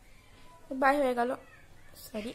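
A woman's voice drawing out one wordless vowel for about half a second, near the middle.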